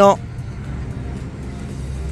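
A spoken word ends just as it begins, followed by a steady low outdoor rumble with no distinct events.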